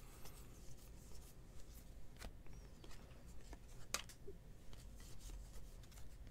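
Bowman baseball cards flicked one after another off a hand-held stack: faint scattered clicks and rubs of card stock sliding over card stock, with one sharper click about four seconds in.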